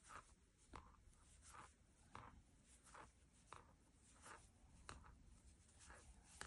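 Faint, soft scratching strokes of a Denise interchangeable Tunisian crochet hook working knit stitches through yarn, about one every two-thirds of a second.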